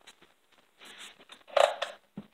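Hand work on a chainsaw at the bench: scattered small clicks and light knocks of a tool against saw parts, with a brief louder scrape about one and a half seconds in.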